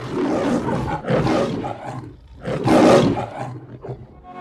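A man roaring like the MGM lion, a long roar and then a second shorter one, followed by a short laugh near the end.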